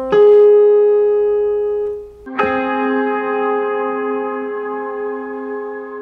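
Yamaha electronic keyboard sounding a minor sixth, C and the A-flat above it: the A-flat comes in over a held C and dies away. About two seconds in, both notes are struck together and held.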